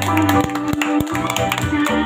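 A woman singing through a microphone and PA over backing music with a regular beat.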